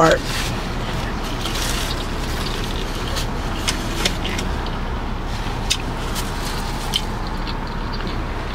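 Steady background noise inside a car cabin, with a few scattered sharp clicks while a person eats a sandwich.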